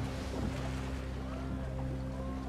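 Sea and wind ambience around a wooden sailing boat on open water, over a steady low drone, with a few faint gliding tones near the middle.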